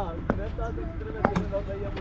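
Faint voices chatting in the background over a steady low rumble, with a few sharp taps, one about a third of a second in and two close together just past a second.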